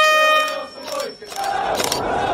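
A group of voices shouting in loud, drawn-out pitched calls, the first held for about half a second, with a sharp click near the end.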